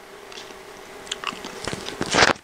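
Scattered small clicks and crackling rustles over a faint steady hum, growing denser and louder near the end: handling noise as the recording device is picked up to stop recording.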